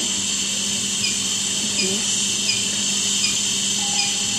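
Steady hiss of gas flowing through an Infant Flow SiPAP driver and its patient circuit, over a low steady hum, with a few faint short high chirps repeating through it.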